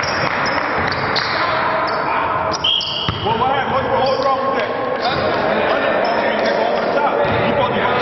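Basketballs bouncing on a hardwood gym floor amid players' voices and calls, echoing in a large gym, with a short high squeak a little under three seconds in.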